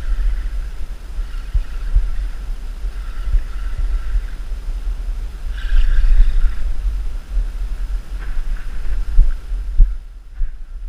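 Wind buffeting an action-camera microphone, a loud uneven low rumble with thumps, over a fainter hiss that swells about six seconds in.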